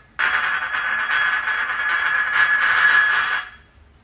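Ceramic bowl scraping across a glazed tile floor as a cat pushes it, a continuous grinding scrape with a ringing squeal that lasts about three seconds and then stops.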